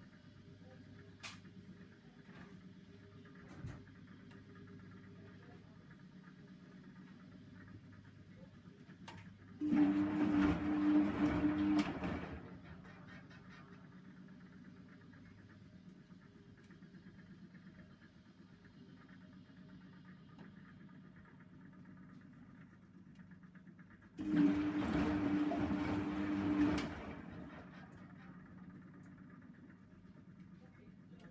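Bendix 7148 washing machine running in two short bursts, each about two and a half seconds of motor hum with swishing, roughly fifteen seconds apart, over a low steady hum.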